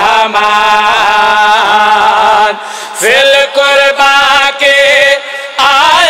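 Men's voices chanting a sung devotional recitation into stage microphones, with wavering, ornamented notes. A short break comes about two and a half seconds in, then one long held note.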